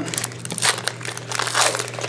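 Trading-card pack wrappers crinkling and crackling in irregular bursts as hockey card packs are torn open and handled.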